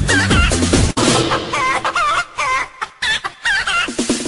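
Techno track whose melody is made of pitched, sampled chicken clucks. About a second in, the bass beat cuts out suddenly, leaving the clucking alone with short pauses, and the beat comes back near the end.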